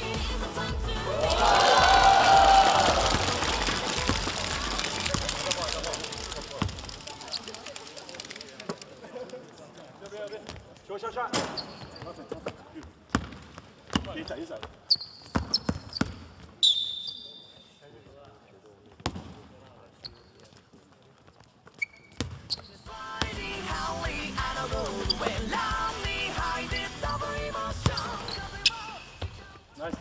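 Background music with a steady beat and loud crowd voices for the first several seconds. After that comes a basketball bouncing on a hardwood gym floor as a player dribbles, in sharp, spaced thuds with echo from the hall. Crowd and player voices build again near the end.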